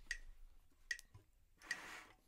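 Metronome ticking at an even pulse of about one click every 0.8 seconds (around 75 beats a minute), with a short hiss near the end.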